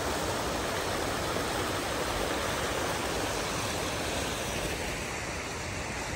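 Water from a plaza fountain's bubbling jets splashing steadily into a shallow pool, easing a little near the end.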